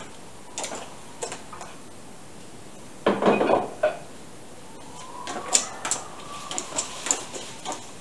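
Quilted moving blankets being pulled and dragged off an antique cutter sled: scattered knocks and clicks, a loud rustle about three seconds in, then lighter rustling with small clicks and a faint creak.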